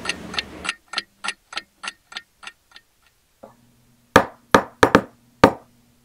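A clock ticking about four times a second, fading out over the first three seconds. A low steady hum then comes in, and five loud, sharp clicks land in quick succession near the end.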